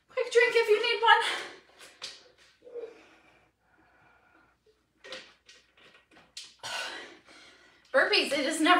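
A woman's voice briefly, then a quiet pause while she drinks from a plastic water bottle, followed by a few short breaths and light clicks as she handles the bottle.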